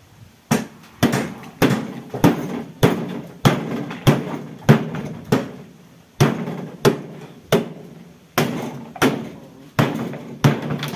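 A hammer striking the sheet-metal cabinet of an old refrigerator being broken apart for scrap: about fifteen sharp blows, one every half second or so, each with a short metallic ring, with two brief pauses.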